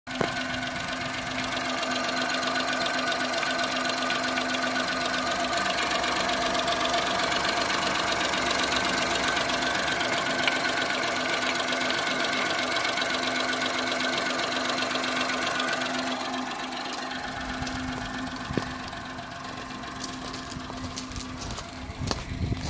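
Daewoo Matiz three-cylinder petrol engine idling steadily, heard close up in the open engine bay. It grows quieter in the last few seconds as the microphone moves away from the bay.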